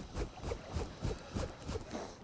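Water lapping and slapping softly, in irregular small splashes about three a second.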